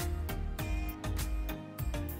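Background music with a steady drum beat over a deep bass line.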